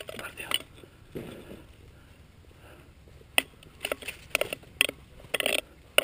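Ice axe and climbing gear scraping and knocking on rock and snow during a mixed climb. There are several short, sharp scrapes in the second half, about two a second.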